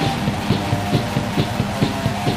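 Depressive black metal song: electric guitar chords held over drums keeping a steady beat, with a strong accent about twice a second.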